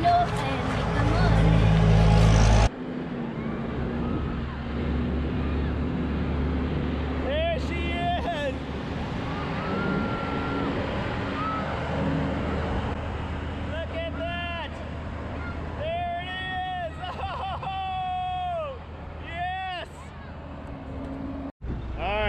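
A semi truck's diesel engine running steadily at idle, with no change in pitch. Voices call out now and then over it. For the first couple of seconds, before a cut, a louder low rumble is heard instead.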